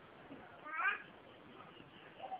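A single short vocal call rising in pitch, a little under a second in, over faint background noise.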